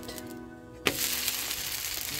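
A sharp slap about a second in as the uttapam is flipped onto the hot cast-iron griddle, then the batter sizzling and frying in oil, over background music.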